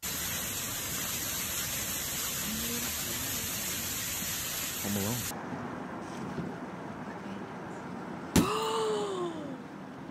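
Water gushing heavily out of a garage ceiling onto a parked car, a loud steady rush that cuts off about five seconds in. Near the end, a single sharp loud bang, followed by a person's shout falling in pitch.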